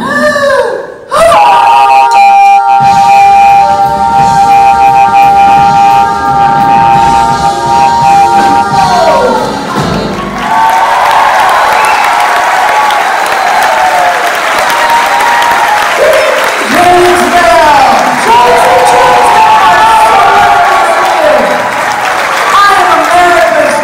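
A band holds a long final chord for about eight seconds, which slides downward and stops, followed by a large audience applauding and cheering with whoops.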